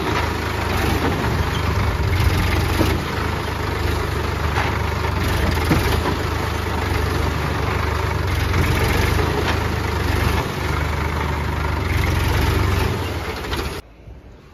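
Sonalika DI-60 tractor's diesel engine running steadily as the tractor wades through deep water, its rear tyres churning and splashing the water. The sound cuts off suddenly just before the end.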